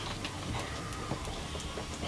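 Quiet studio room tone, a low hum with a few faint scattered ticks.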